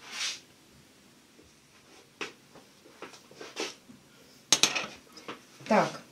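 Kitchen handling sounds: a few light knocks, then a quick cluster of metal clatter about halfway through as a baking tray and its wire tray lifter are set down on a glass cooktop. A brief falling vocal sound comes just before the end.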